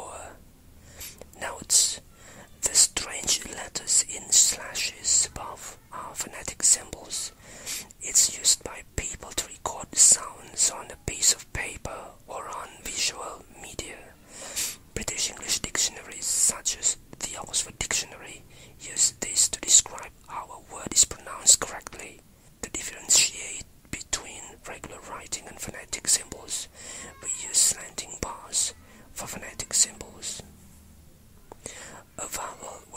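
Whispered speech: a voice whispering English words without voicing, full of hissy consonant sounds.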